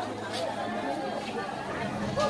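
Indistinct chatter of people talking around a busy market stall, with a low steady hum underneath and a brief sharp click about half a second in.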